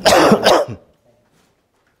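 A man coughing into his hand: two quick, loud coughs within the first second.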